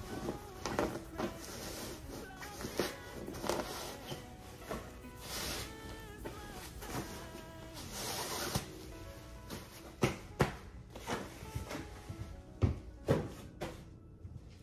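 Soft background music, with fabric rustling and handling knocks as stuffed pillow inserts are pulled out of their cloth covers. The sharpest knocks come in the last few seconds.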